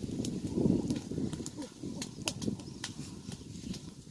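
Open fire of dry leaves and twigs crackling, with irregular sharp pops over a dense low rumble.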